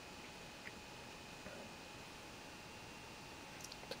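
Near silence: faint room tone with a steady hiss and a few small, faint clicks.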